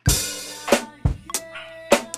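Acoustic drum kit played with sticks: a cymbal hit right at the start rings out and fades, followed by three hard drum strikes about 0.6 s apart. Held tones from other instruments sit underneath.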